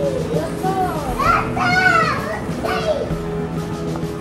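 Background music, with young children's high-pitched voices calling out over it: several rising-and-falling cries between about one and three seconds in, loudest in the middle.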